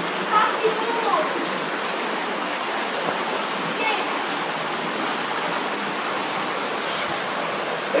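Steady rushing water from a waterfall, an even, unbroken roar.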